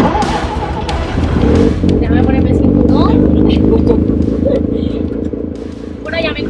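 Mazda 13B rotary engine in a Smart car running with a low, pulsing note, heard from inside the cabin; it gets louder about a second and a half in.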